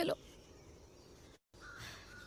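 A woman's spoken line ends right at the start, then faint background ambience with a brief total dropout of sound about a second and a half in, after which faint thin chirp-like tones come back in.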